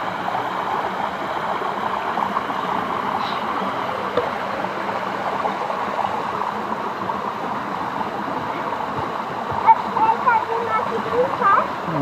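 Water running steadily down a concrete channel and over its low step drops, a constant rushing flow. Faint voices come in near the end.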